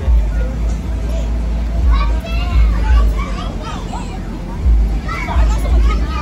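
Young children calling and chattering as they play in an inflatable bounce house, their high voices rising about two seconds in and again near the end, over a heavy, uneven low rumble.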